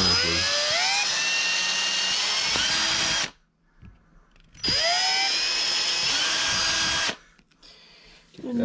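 Ryobi cordless drill boring pilot holes through a black plastic motor-mount plate. It makes two runs of about three and two and a half seconds, with a short pause between them. Each run opens with a rising whine as the motor spins up, then holds steady.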